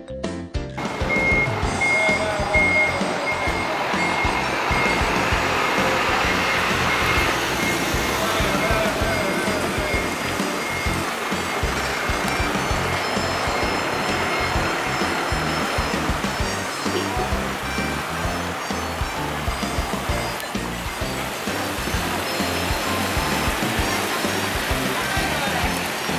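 Busy outdoor ambience with music and traffic noise. A high beeping tone repeats on and off through the first half.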